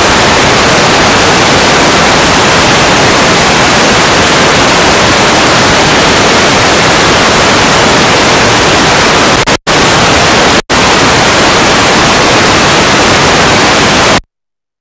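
Loud, steady static hiss from a faulty audio feed, close to full scale, cutting out twice for an instant about a second apart roughly two-thirds of the way through. It is interference in the audio chain while the microphone was being switched during a technical fault.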